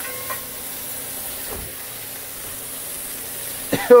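Blackened redfish fillets frying in butter in a hot cast iron skillet: a steady sizzle.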